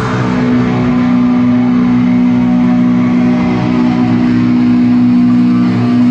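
Distorted electric guitar holding one long sustained note with the drums silent.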